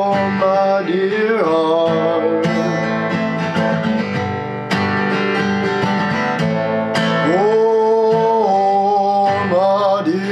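Steel-string acoustic guitar being strummed and picked in a slow folk accompaniment. A man's voice sings long held, sliding notes over it in the first second or so and again from about seven seconds in.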